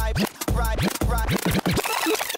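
Drum and bass music with turntable scratching over it: a record pulled back and forth under the needle in quick strokes, the pitch sweeping up and down over heavy bass.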